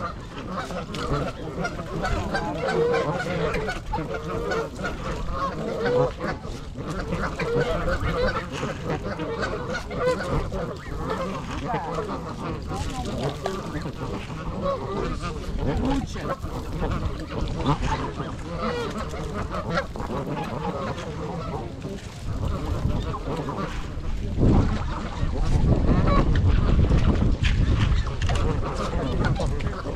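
A flock of Canada geese honking and calling in a dense, overlapping chorus. In the last few seconds a louder low rumble comes in under the calls.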